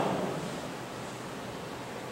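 Steady, even hiss of room tone in a hall. The last of a man's voice fades in the room's echo just at the start.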